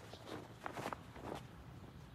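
Faint outdoor background noise with a few soft scuffing sounds between half a second and a second and a half in.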